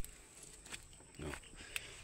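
A single sharp click right at the start, then quiet with a few faint ticks and a brief low voice-like hum a little over a second in.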